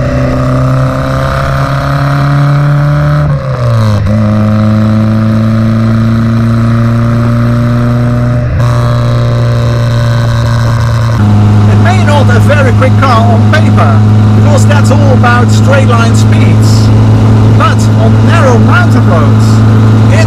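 The Innocenti Coupé's 1098 cc four-cylinder engine pulling the car under acceleration: its pitch rises, drops sharply at a gear change about three and a half seconds in, climbs again, then settles to a steady cruise. A man's voice talks over the steady engine in the second half.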